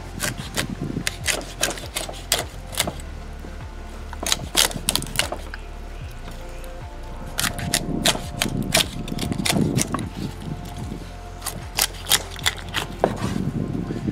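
A large knife cutting along the backbone of a raw turkey: a run of sharp cracks and crunches as the blade breaks through the rib bones, heaviest in the first few seconds and again in the second half. Faint background music plays underneath.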